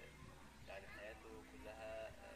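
Faint human voices: a few short, quiet vocal sounds, the last one drawn out for about half a second.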